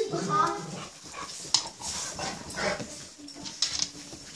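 Two dogs play-fighting on a bed: a short whining call at the start, then scuffling on the bedding and a faint low growl near the end.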